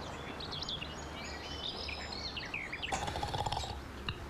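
Small birds chirping and twittering over a steady low background hum. Near the end comes a short rasping noise.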